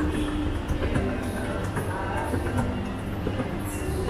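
Escalator machinery running, a steady low rumble with light clicks as the moving steps reach the top landing, over background music.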